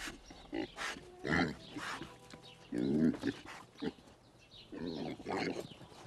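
A domestic pig grunting in several short bursts.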